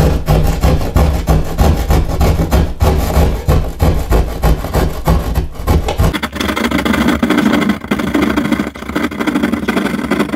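Hand drywall saw sawing back and forth through ceiling drywall in quick, repeated strokes, cutting the edge of a round hole wider. The sound turns steadier and more even about six seconds in.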